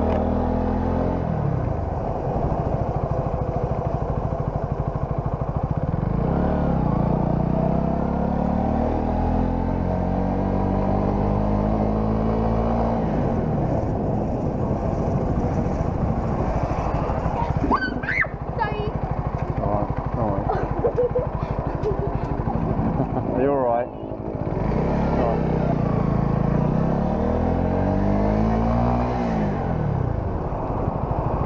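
Motorcycle engine running as the bike rides along, its revs climbing and dropping back several times as it accelerates and shifts gear, with a brief dip in sound about three-quarters of the way through.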